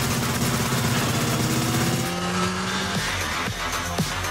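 Motorcycle engine running hard in a film chase mix, layered over dramatic music. About halfway through a rising whine comes in, and a few sharp hits land near the end.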